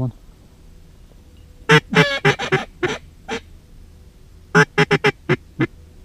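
Duck call blown in two series of short, loud quacks, about seven and then about five, to draw in passing ducks.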